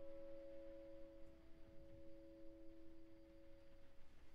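Yamaha grand piano's final notes held down and ringing out softly: a few steady tones from the last chord, slowly fading.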